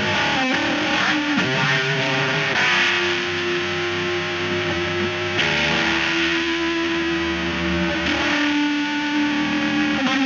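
Electric guitar played through a distorted FX loop (Arturia MicroBrute) and the Boredbrain Transmutron's wide resonant notch filter, its split point modulated at audio rate by an envelope generator and offset with an expression pedal. Long held notes change about every three seconds, with the tone bending and sweeping in the first second or so.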